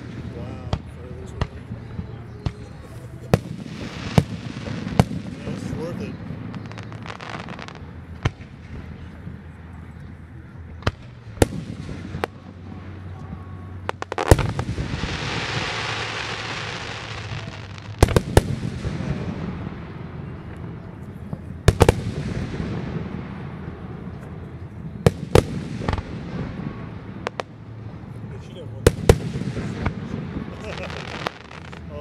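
Aerial fireworks shells bursting in a steady series of sharp booms. The loudest reports come about 14, 18 and 22 seconds in, and the first of these is followed by several seconds of dense hiss.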